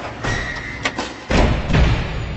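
Cinematic sound effects for an animated logo reveal: swelling hits with a sharp click just before a second in, then a heavy, deep impact at about a second and a half that rings out slowly.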